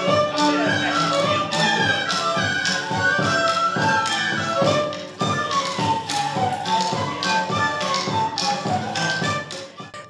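Moldavian folk dance music played live by a small band: a fiddle melody over a steady beat of sharp taps, about two a second. The beat dips briefly about halfway through.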